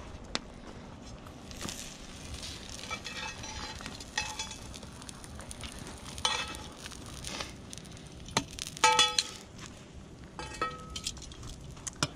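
Metal tongs clinking against a metal pan and plate as grilled potatoes are picked up and plated: scattered clinks, several of them ringing briefly, the loudest pair about nine seconds in.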